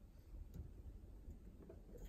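Near silence with a few faint ticks from a wooden stir stick against a small plastic cup, stirring pH indicator drops into a water sample.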